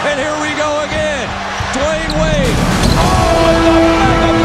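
Basketball game sound: a ball bouncing on a hardwood court, with voices, over music that grows fuller about halfway through.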